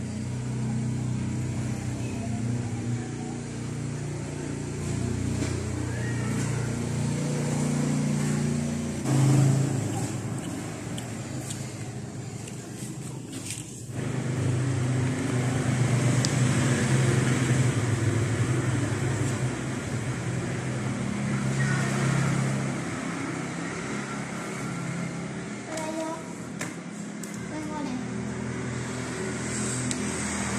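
A low, steady motor hum that rises and falls in level, swelling loudest about nine seconds in, with a few faint clicks over it.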